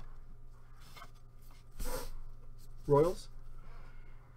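Trading cards handled by gloved hands, with one short scraping rustle of card against card about halfway through. A brief voice sound follows near the end, over a steady low hum.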